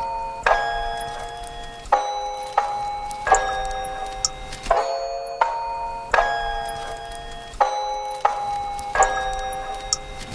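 Lo-fi hip-hop loop built from home-recorded samples: ringing bell notes struck about every three-quarters of a second, the phrase repeating about every three seconds, over a faint bed of layered foley noise from electric razor, water droplet and paper bag samples.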